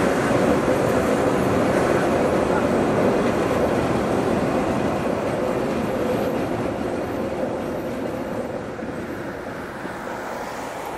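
Electric-hauled passenger train rolling across a railway bridge: a steady rumble of wheels on rails, fading over the last few seconds as the train moves away.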